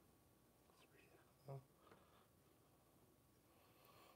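Near silence: room tone, with one brief, faint murmured word about one and a half seconds in.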